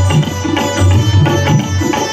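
Live band music played through a concert sound system: an instrumental passage with strong, repeated low drum beats under a pitched melody.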